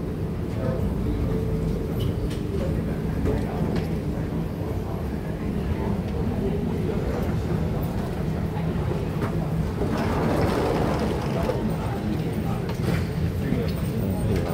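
Busy airport terminal ambience: a steady low mechanical hum with passengers' voices chattering in the background.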